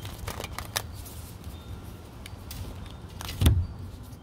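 Tarot cards being handled and drawn from the deck: light rustles and taps, then one louder thump about three and a half seconds in, over a steady low rumble.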